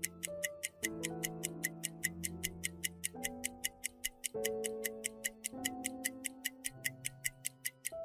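Quiz countdown timer ticking: sharp, evenly spaced clock ticks, about four to five a second, over soft background music with held chords that change every second or so.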